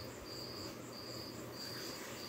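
An insect chirping in short, high-pitched pulses about twice a second, faint and regular.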